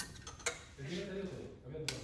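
Wooden clothes hangers clicking against a metal clothing rail as a T-shirt on its hanger is lifted off, with two sharp clicks, about half a second in and near the end.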